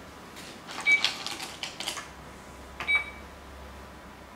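Go stones clacking on a wooden board and clicking in their bowls: a sharp clack about a second in, a quick run of smaller clicks over the next second, and another sharp clack near three seconds.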